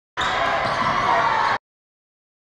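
Gymnasium game sound from basketball footage: crowd noise and voices with a basketball dribbling on the court. It lasts about a second and a half and cuts off suddenly.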